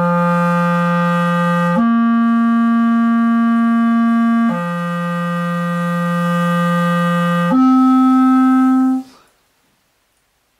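Solo clarinet playing four long sustained notes, alternating a low note with higher ones, then stopping near the end. Slow technical practice of a concerto passage, note by note.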